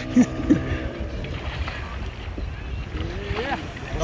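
Wind rumbling on the microphone over open sea, with a faint steady hum and a couple of brief, distant voice fragments.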